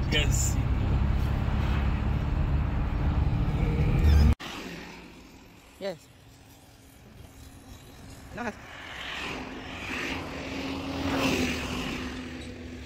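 Car interior noise: a steady low rumble from the engine and tyres while driving, which cuts off suddenly about four seconds in. After that comes quiet outdoor background with a brief laugh and a short "yes", and a faint hum that grows louder near the end.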